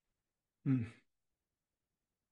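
A man's voice saying one short word, "and", about two-thirds of a second in, with a breathy, sigh-like quality; otherwise silence.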